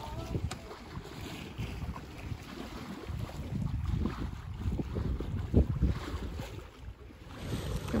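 Gusty low rumble of wind on the microphone aboard a sailboat at sea, over the wash of the sea.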